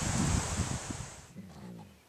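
Wind hissing through the trees and buffeting the microphone. It cuts off abruptly a little over a second in, leaving a much quieter stretch.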